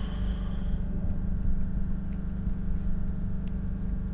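A steady low rumbling drone with no change in pitch, with a couple of faint clicks.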